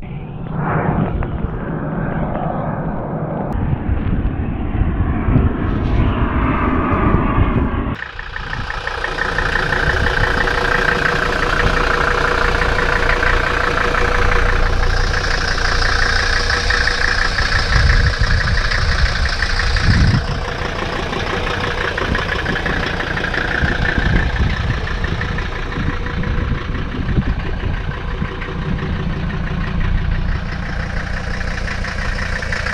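Mercedes-Benz 300D W123 five-cylinder turbodiesel idling steadily, following a few seconds of a different, muffled sound at the start.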